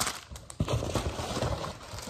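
Rustling of plastic-wrapped sample packets and a fabric reusable shopping bag as they are handled and rummaged, with a sharp knock as a packet is set down at the start and a run of low bumps about half a second in.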